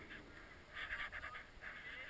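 Faint scraping hiss of a snowboard sliding over snow, coming and going in short patches.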